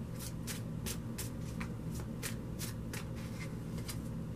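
A deck of tarot cards being shuffled by hand: short papery slaps and clicks as cards are pushed through the deck, about three a second.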